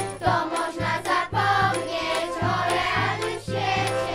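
A children's vocal ensemble singing a song together over a backing track with a steady bass beat.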